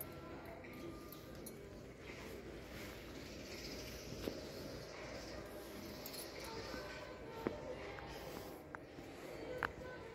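Large store's indoor ambience: indistinct distant voices over a steady background hum, with a few short sharp clicks.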